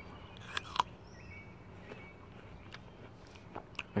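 Biting into a raw apple slice: two sharp crunches about half a second in, then quieter chewing.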